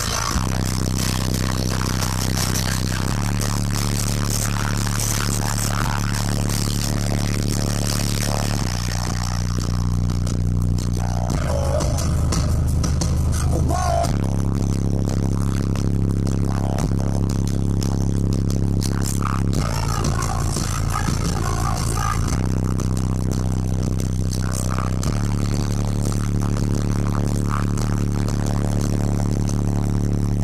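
Twelve 12-inch JBL subwoofers in a fourth-order bandpass enclosure playing bass-heavy music at high volume: long, held deep bass notes that step to a new pitch every three to five seconds.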